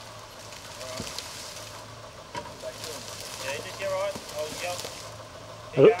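Suzuki Sierra's small four-cylinder engine idling with a low steady hum as the vehicle creeps slowly on a steep grassy slope, with faint voices in the background.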